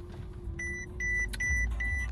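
Mercedes-Benz W221 S-Class dashboard warning chime beeping repeatedly at one pitch, starting about half a second in at roughly two and a half beeps a second, over the low rumble of the car.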